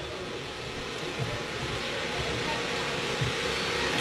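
Steady background noise with no clear pitch or rhythm, slowly growing louder, in a pause in the recitation.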